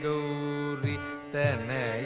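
Carnatic classical music: a voice sings gliding, ornamented phrases over a steady drone, with low drum strokes coming in about a second in.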